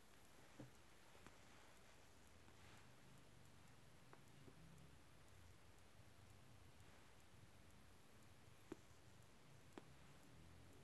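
Near silence: room tone with three faint clicks, one about half a second in and two near the end.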